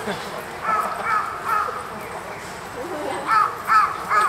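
A crow cawing: three caws about 0.4 s apart about a second in, then two louder caws near the end, over the murmur of a crowd.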